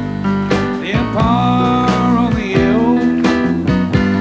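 A live rock'n'roll band plays an instrumental passage on piano, electric bass guitar and drums, with a steady beat. A held melody line bends in pitch between about one and two and a half seconds in.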